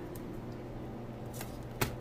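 A plastic food tub of partly frozen water, a phone sealed inside, set down on a kitchen countertop with a single sharp knock near the end, after a few faint handling ticks.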